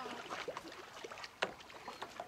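Faint splashing of kayak paddles and water in the shallows, with one sharp click about a second and a half in.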